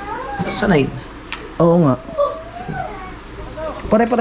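Voices talking in short bursts, with a single sharp click a little over a second in.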